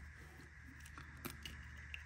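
Faint small clicks of a plastic marker being handled and its cap pulled off.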